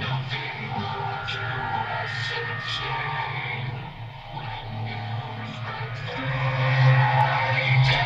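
Music with guitar.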